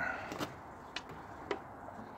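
Three short, sharp clicks about half a second apart, over faint steady background noise.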